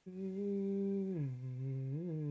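A man humming with closed lips, holding one low note and then sliding down to a lower one about a second in.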